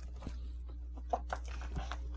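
Tarot card decks being handled off-camera: a few light taps and clicks, over a steady low hum.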